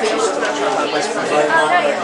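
Indistinct chatter of several people talking over one another in a room, with no instrument playing.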